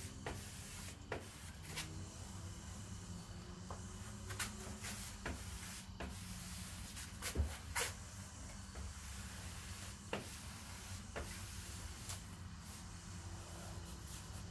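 Vinyl wrap film being pressed and stretched onto a car door by hand and squeegee: faint scattered clicks and rubs, a dozen or so, over a low steady hum.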